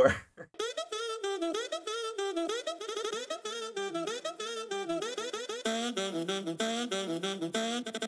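A saxophone-like melody from a machine-learning synthesizer: a run of short, stepped notes with small slides between them. About two-thirds of the way through, the line moves lower and sounds fuller.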